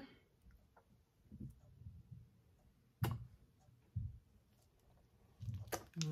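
Quiet room with a few faint low knocks and one short, sharp click about three seconds in.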